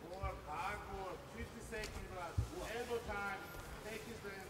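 Voices shouting across a fight arena, rising and breaking off in short calls, with a dull thump about two and a half seconds in.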